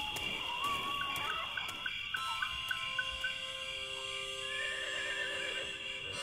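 Night-time sound effects of crickets chirping and a horse whinnying. About two seconds in, steady held synth chords fade in.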